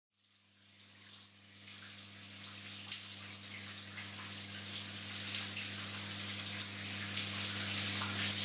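Shower running: water spray that fades in about a second in and grows slowly louder, over a steady low hum.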